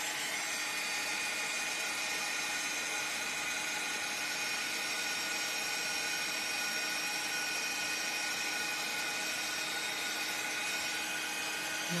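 Craft heat gun running steadily, a constant fan whir with a high whine, melting embossing powder on paper.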